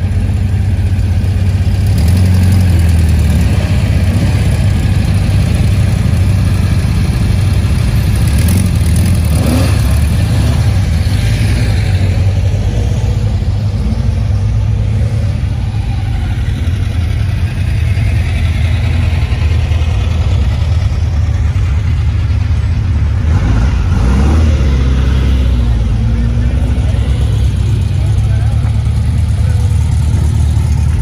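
Classic air-cooled Volkswagen Beetle flat-four engines running at low speed as the cars roll past one after another, a steady low rumble with a couple of brief rises in engine note.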